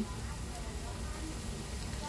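Grated-cassava fritters frying in a pan of hot oil, a low, steady sizzle.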